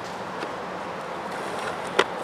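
Steady outdoor background noise with a faint click about half a second in and a sharper click near the end, from a small plywood pochade box being handled.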